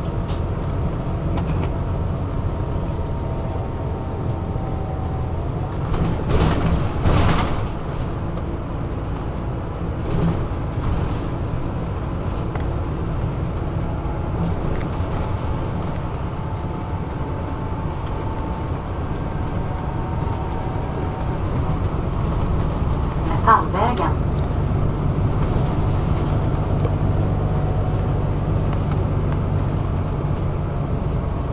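Cabin noise of a city bus on the move: a steady low engine and road rumble. A brief louder stretch comes about six to seven seconds in, and a short high-pitched sound about two-thirds through, after which the rumble grows heavier.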